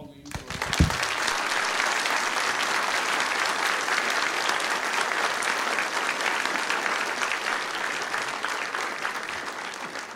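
Audience applauding, rising about half a second in and tapering off near the end, with a low thump just under a second in.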